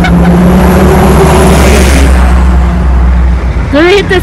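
City commuter bus engine running as the bus pulls away and passes close by. Its low drone swells with a rush of hiss in the middle, then drops away shortly before the end.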